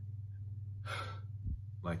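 A man's single deep breath: a short rush of air about a second in, part of a demonstration of slow relaxation breathing.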